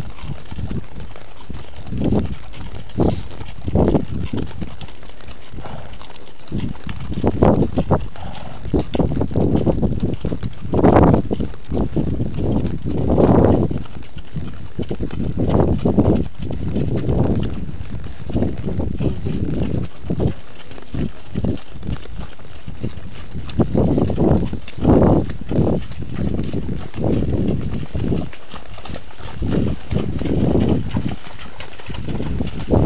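Several horses walking on a trail, their hooves clip-clopping irregularly on gravel and dirt, heard from the back of one of the horses.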